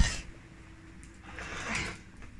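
Cloth rustling and handling noise close to the microphone, swelling into a louder rustle near the end.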